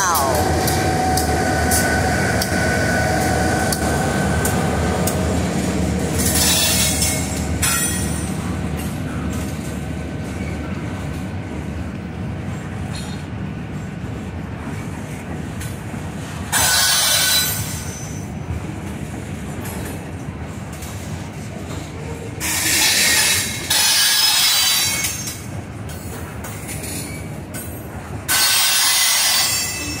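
Freight train crossing a wooden trestle overhead. The diesel locomotive's engine hums past at first, then the cars roll over the bridge with a steady rumble of wheels on rail. Several louder bursts of noise break in along the way.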